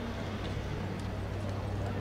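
Open-air ambience: a steady low rumble with a few faint sharp clicks and faint voices.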